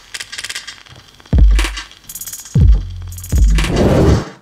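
Logo intro sting of electronic sound design: rapid metallic clicking and ticking, broken by three deep hits that drop in pitch, one about a second and a half in and two more near the end.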